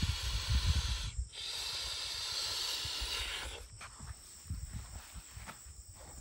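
Steady hissing in two stretches, the second even and about two seconds long, over low bumps and thuds of handling; after it, quieter rustling.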